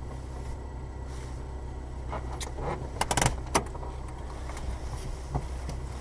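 Steady low rumble of a car driving, heard from inside the cabin, with a quick cluster of sharp clicks and rattles about three seconds in.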